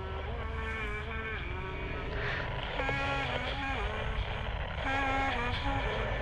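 Eerie film sound design: a deep, steady rumbling drone with slow, held tones over it that step up and down in pitch, swelling a little about three and five seconds in.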